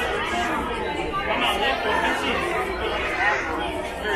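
Indistinct chatter of several visitors' voices talking at once, no words clear.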